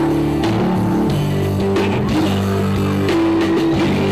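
Live band music with electric guitar, held bass notes and a steady drum beat.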